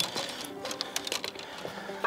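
Quiet background music with held notes, under faint scattered ticks.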